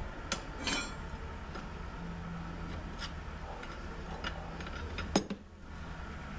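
Scattered light metallic clinks and taps of hand tools working at the bolted base of a sliding-gate motor, with a short rattle near the start and a sharper knock about five seconds in.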